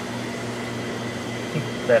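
Steady mechanical hum and hiss of running equipment, with a low steady drone under it.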